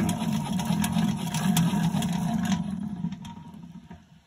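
Hand-cranked honey extractor spinning, its crank gears and frame basket whirring with rapid clicking. It slows and fades to quiet about three seconds in.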